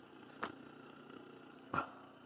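Faint steady hum of the running Rotovertor AC motor and BiTT transformer rig. Two brief sudden sounds cut in, a small one about half a second in and a louder one near the end.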